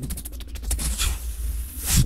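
Beatboxing into a handheld recorder's mic: a quick run of clicks, then a long hissing sound held for over a second, ending on a kick-drum thump.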